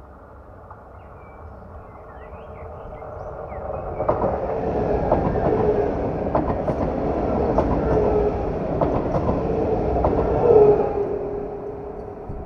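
Passenger train passing close at speed: the rumble builds, the train rushes by with a run of sharp wheel clicks over the rail joints and a wavering hum, then it fades as the train recedes. Birds chirp faintly in the first few seconds.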